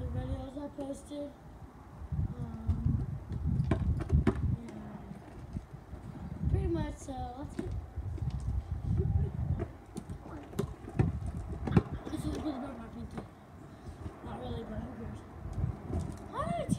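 Wind buffeting the microphone in repeated low gusts, with a few sharp knocks and some faint voice-like sounds.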